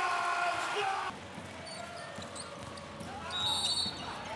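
Basketball game sound from the arena floor: a voice calling out loudly for about the first second, then quieter court sound with a ball bouncing on the hardwood and a brief high squeak near the end.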